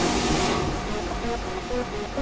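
Progressive house track in a transition: a noise sweep fades out in the first half second over held synth notes.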